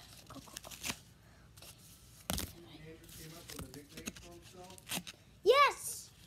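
Packaging of a Pokémon card pack being torn open by hand: a few short, sharp rips with crinkling, the loudest about two seconds in. A child's loud vocal cry comes near the end.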